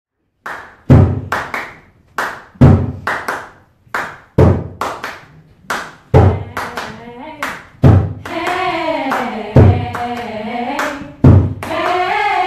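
Rhythmic hand clapping, each bar opening with a low thump and followed by a few sharp claps, repeating about every second and three-quarters. About halfway through, a women's a cappella choir starts singing over the beat, holding full chords from about eight seconds in.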